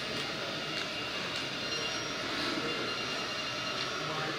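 Steady background hiss and hum of a hall's room tone, with no speech.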